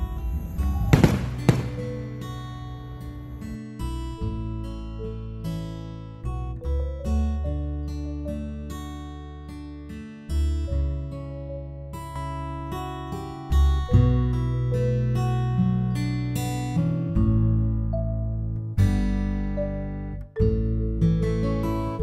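Two sharp bangs about a second in, from fireworks bursting. After them comes instrumental background music led by strummed acoustic guitar.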